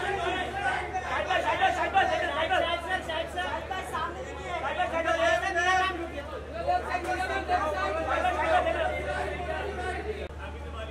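Overlapping chatter of a group of photographers' voices, several people talking and calling out at once, over a steady low hum.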